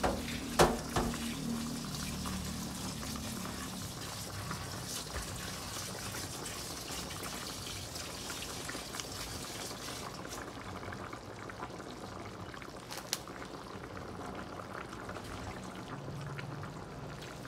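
Pork sinigang broth simmering in a stainless steel pot, giving a steady bubbling. A few sharp knocks come about half a second to a second in, and one more near the end.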